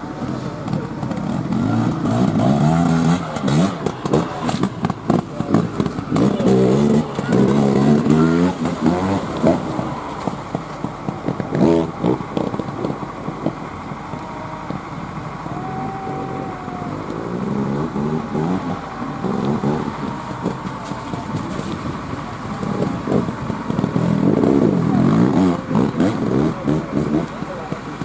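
Enduro dirt bike engine revving in repeated throttle bursts as it is ridden over steep, rough dirt, loudest in the first third and again near the end.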